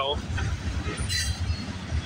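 Freight train of autorack cars rolling past close by: a steady low rumble of wheels on the rails, with a brief higher-pitched rattle about a second in.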